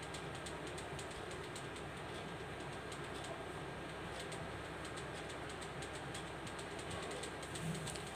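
Pen writing on notebook paper: faint scratching strokes over a steady background hiss.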